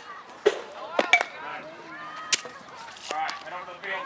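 Baseball bat hitting a tossed ball about half a second in, followed by a few more sharp knocks, with voices talking in the background.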